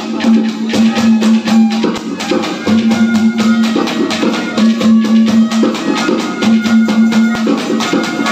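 Instrumental interlude of a live Haryanvi ragni band: drums and percussion keep a fast, steady beat under a melody of long held notes.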